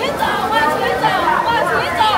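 People talking close by in a crowd, several voices overlapping.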